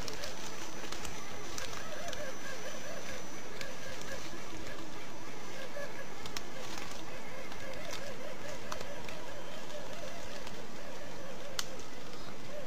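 Electric motor and gears of an Axial SCX10 radio-controlled scale crawler whining as it creeps up a tree trunk, with a few sharp clicks.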